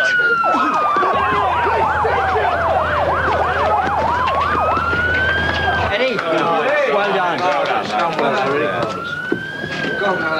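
Police siren sounding: a slow wail that rises and falls about every six seconds, joined for a few seconds near the start by a fast yelp of about three to four swoops a second, over raised voices.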